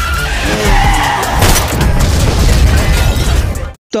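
Loud, dramatic action-film soundtrack: music mixed with sound effects. It cuts off abruptly just before the end.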